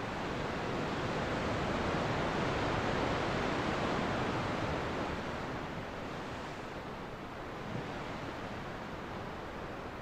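Ocean surf: a steady wash of breaking waves that swells over the first few seconds and then eases off.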